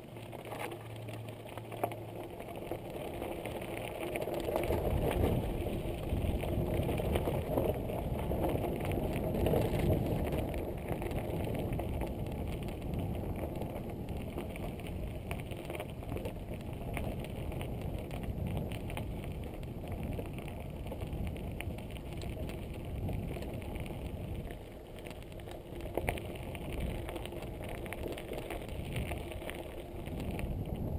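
Mountain bike rolling over a loose gravel track: tyres crunching on stones, with the frame and parts rattling in a dense run of small clicks. It grows louder a few seconds in as the bike picks up speed.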